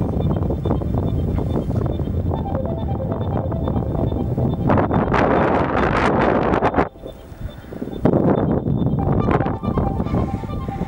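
Wind buffeting the camera's microphone in a low, steady rumble. A stronger gust builds about five seconds in, cuts off suddenly around seven seconds, and the rumble returns a second later.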